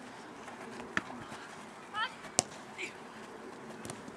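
A few sharp thuds of a football being kicked across an open pitch: one about a second in, the loudest a little after halfway. A brief distant shout comes just before the loudest one.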